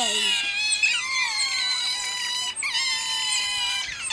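A group of Asian small-clawed otters crying to beg for food: several high-pitched, drawn-out squealing calls overlap at once.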